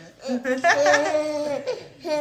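A long drawn-out laugh, one voice held at a fairly steady pitch for about a second and a half.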